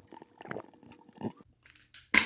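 A person gulping water from a large plastic water bottle: a string of faint, irregular swallows.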